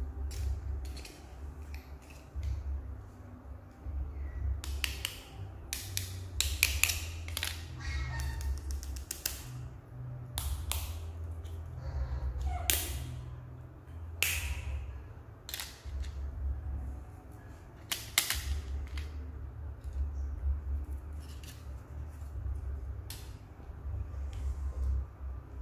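Sharp clicks and scrapes of a plastic scoop working in a tin of milk formula powder, bunched through the middle of the stretch, over a steady low rumble.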